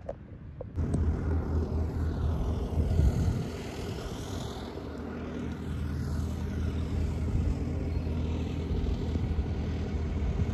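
Road and engine noise of a moving Toyota heard from inside its cabin: a steady low drone with tyre and traffic rush, which comes in suddenly about a second in.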